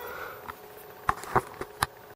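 The steady whine of a stepper-driven filament extruder cuts off right at the start, followed by about five sharp clicks and taps spread over the next second and a half.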